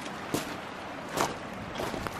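Footsteps crunching on loose gravel and stones, three steps at a walking pace.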